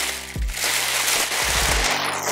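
Plastic packing wrap being crumpled and pushed into a cardboard box, a loud, dense crackling rustle, over background music with a steady beat.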